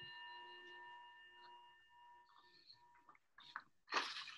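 A struck bell rings out with a clear, several-toned ring that slowly fades, dying away about three seconds in.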